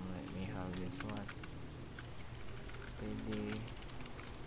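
Computer keyboard typing: a run of irregular keystroke clicks as code is entered. A voice comes in briefly at the start and again about three seconds in, louder than the keys.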